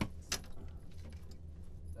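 Two sharp clicks close together right at the start, then faint light clicking, over a steady low hum.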